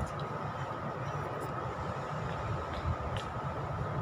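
Wind buffeting the microphone outdoors, a low uneven rumble, over a steady faint high hum, with a few light clicks.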